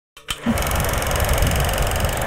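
A steady mechanical running noise with a low rumble and a fast, even clatter, starting with a click just after the start.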